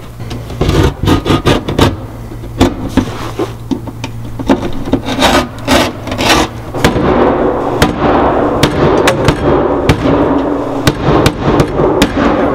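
Claw hammer repeatedly striking the thin wooden back panel of a cabinet to knock a hole through it: a loud, irregular series of sharp knocks, with a denser, more continuous scraping noise under the blows in the second half.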